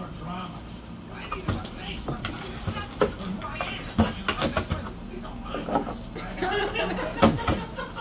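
A dog biting and tearing at the edge of a corrugated cardboard box, with several sharp rips and crunches of the cardboard.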